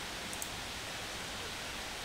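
Steady, even background hiss of the recording, with no distinct sound over it.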